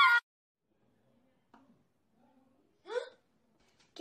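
A child's voice singing in a warbling mock-opera style stops abruptly just after the start. Silence follows, broken about three seconds in by one short vocal sound from a girl, rising in pitch.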